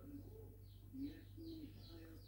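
Faint bird calls: short, repeated low cooing notes, with a few higher falling chirps above them.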